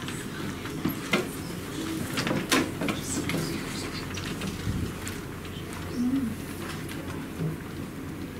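Classroom background noise: a steady low hiss and hum with scattered sharp clicks and knocks, the sounds of students handling things at their desks.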